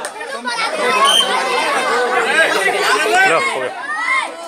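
A crowd of children's voices talking and shouting over one another, a dense, busy chatter with no single speaker standing out.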